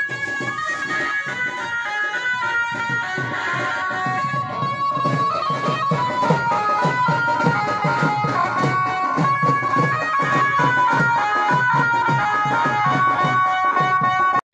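Loud Indian festival music with a steady drum beat and a high melody line.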